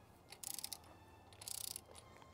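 Hand ratchet wrench clicking faintly in two short bursts of rapid ticks, about half a second apart from one another's end, as it is swung back and forth on an engine fastener.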